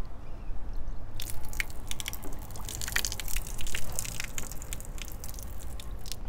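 Water dripping from the dust-suppression cannon's water line as the filter housing is worked on for maintenance, heard as irregular small drips and clicks that begin about a second in.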